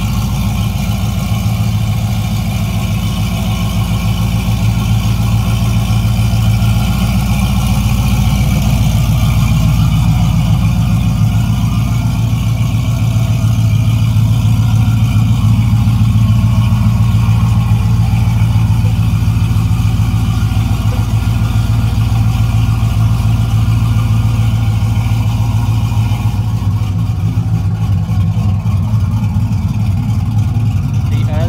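Chevrolet pickup truck's engine idling steadily, a loud, even low rumble with no revving.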